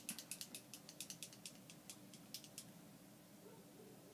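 A quick, uneven run of faint, sharp clicks, about six a second, that stops under three seconds in, leaving faint room tone.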